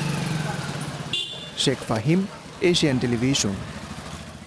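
Motorcycle engine passing, loudest at the start and fading away within the first second, followed by a short high beep and a voice speaking.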